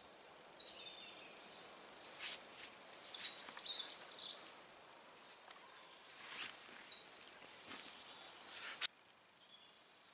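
A small songbird singing twice, each song a run of high notes ending in a fast trill, with a few rustles of movement in between. The sound cuts off sharply near the end.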